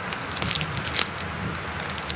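A tape-covered paper squishy crinkling and crackling as it is pressed with a finger, with a couple of faint clicks.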